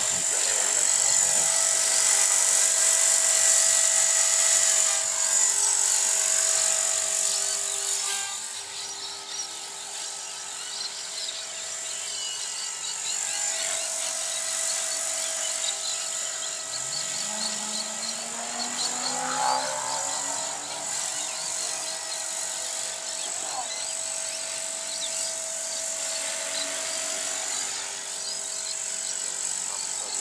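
Align T-Rex 450 electric RC helicopter in flight, its motor and rotor giving a steady high whine. It is louder for the first several seconds while low and close, then fainter as it climbs away, with its pitch sliding up and down as it manoeuvres around the middle.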